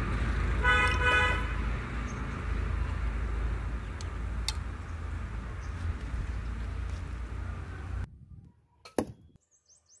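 Steady outdoor rumble with a vehicle horn tooting briefly about a second in and a few light clicks. Near the end the sound drops to quiet and there is a single sharp thwack: a crossbow arrow striking the cardboard target.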